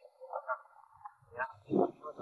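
A few short animal calls, then a man starts speaking near the end.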